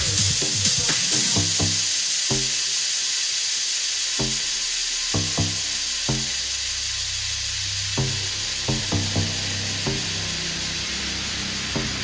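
Electronic dance music from a club DJ set at a breakdown. The steady kick drum stops about a second and a half in, and a loud white-noise hiss washes over the track, leaving scattered drum hits. A low bass note comes in about halfway.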